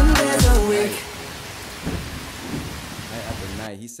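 A pop song's last bass-heavy bars and vocal fade out in the first second, giving way to the soundtrack's steady rain with thunder. The rain cuts off suddenly just before the end as the video is paused.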